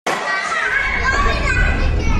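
Many children's voices shouting and calling over one another, a schoolyard babble, with a low rumble underneath from about half a second in.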